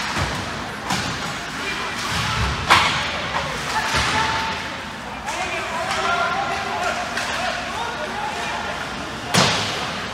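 Ice hockey game in a rink: sharp cracks and thuds of sticks, puck and players hitting the boards and glass, one right at the start, a loud one about a third of the way in and another near the end, over spectators' voices.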